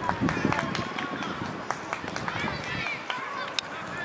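High-pitched children's voices calling and shouting across an outdoor football pitch, with a few sharp knocks scattered through.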